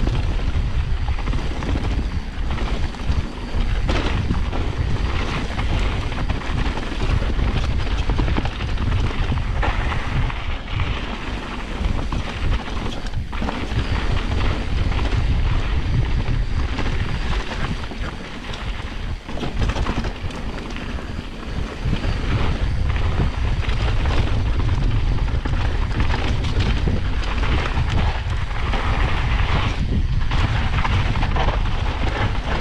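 Mountain bike riding down a dirt singletrack trail: a steady rumble of wind and tyre noise on the camera's microphone, with the knocks and rattle of the bike over rough ground. It eases briefly about eighteen seconds in.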